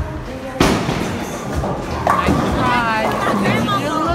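A loud thud about half a second in, with a noisy tail lasting about a second, then voices over the background music of a bowling alley.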